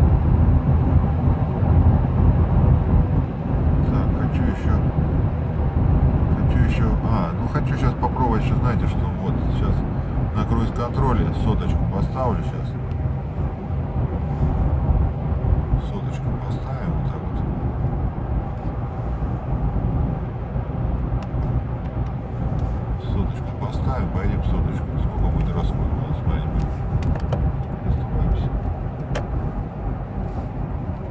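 Steady cabin noise of a 2016 Toyota Land Cruiser Prado 150 with the 2.8 four-cylinder turbodiesel, cruising on the highway at about 110–120 km/h near 2000 rpm: a low rumble of engine, tyres and wind. It gets a little quieter after about 13 seconds.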